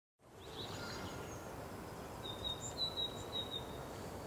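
Faint outdoor background noise rising out of silence just after the start, with small birds chirping and a thin, high whistling call through the middle.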